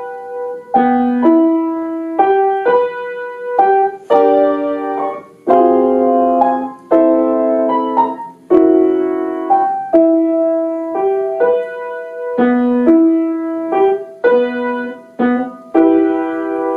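A piano played in a slow, simple piece: struck notes about once a second, each left to ring, with fuller chords through the middle.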